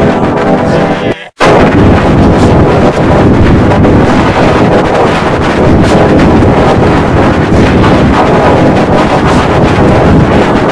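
A Samsung logo jingle run through heavy 'G Major' audio effects, very loud and distorted. It cuts off sharply about a second in, and the next effected version starts straight away as a dense, harsh noise.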